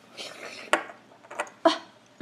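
Small plastic toy pieces being handled and set down on a marble tabletop: a brief soft rustle, then a few separate sharp clicks and taps.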